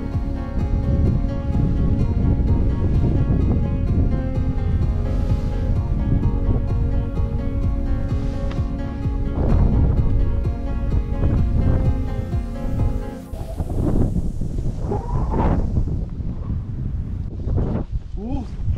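Instrumental background music over a low wind rumble. The music stops about three-quarters of the way through, leaving wind on the microphone and the hiss of a snowboard riding through powder snow.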